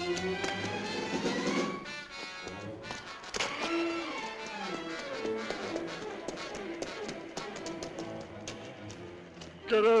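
Tense orchestral film score with strings, over quick running footsteps slapping on a wet paved alley. Near the end a man's voice cries out loudly as a struggle begins.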